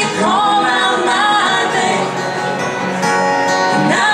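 Live country song: a woman singing into a microphone, backed by two acoustic guitars strumming and picking.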